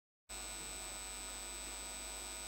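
Dead silence at first, then about a third of a second in a steady electrical mains hum with a thin, high-pitched whine starts and holds unchanged. This is the recording's background noise.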